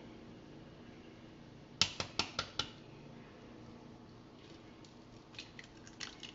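An egg being cracked on the rim of a plastic mixing bowl: about five quick sharp taps just before the middle, then fainter small clicks near the end.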